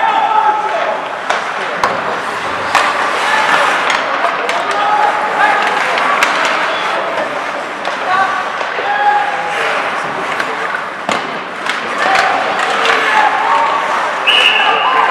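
Ice hockey play echoing in a near-empty rink: skates scraping the ice, sharp clacks of sticks on the puck and hits against the boards, with players shouting to each other.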